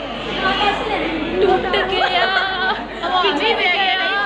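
Several women talking at once in overlapping, animated chatter.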